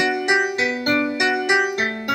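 Piano playing a slow rolling left-hand pattern in eighth notes, one note at a time through the chord B, D, F sharp, G. Near the end it moves to the second chord, built on a low A (A, C sharp, F sharp, A).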